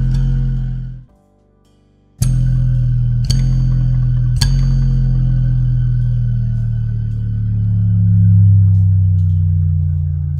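Low electrical hum from an amplifier fed by a hard drive's spindle motor winding, the motor working as a generator while its platter is spun by hand, so the pitch follows the platter's speed. The hum drops out for about a second near the start, returns with a sharp click, takes two more clicks about a second apart, and then slides slowly in pitch.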